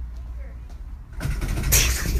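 Low rumble of handling and air movement on a phone's microphone, swelling about a second in to a loud burst of rustling noise as the phone is carried at a hurried pace.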